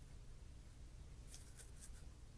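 Near silence, broken by three short, faint scratches about a second and a half in, as hands rub over a stiff leather knife sheath.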